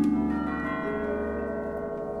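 Symphony orchestra playing: a chord struck at the start rings on in many sustained tones that slowly fade away.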